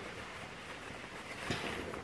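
Quiet room tone with a short rustle of fabric about one and a half seconds in, as a pair of printed shorts is picked up and held up.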